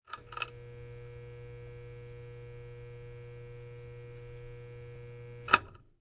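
Steady electrical hum like a buzzing neon sign, with a couple of short crackles at the start and one sharp, loud zap about five and a half seconds in, after which it fades out.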